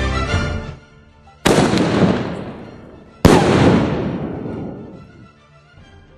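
Aerial firework shell going off: two sharp, loud bangs about two seconds apart, each trailing off slowly. They are the shell firing from its tube and then bursting overhead.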